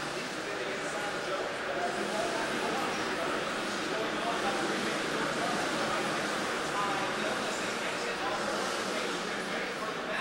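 Indistinct chatter of many people talking at once in a crowded room, at an even level throughout with no single voice standing out.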